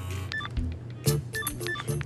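Mobile phone keypad tones as keys are pressed to type a text: a quick run of about five short electronic beeps at a few different pitches.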